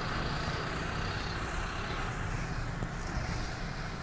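Road traffic noise, with a passing car's hiss sweeping down in pitch between about one and three seconds in, over a steady low rumble.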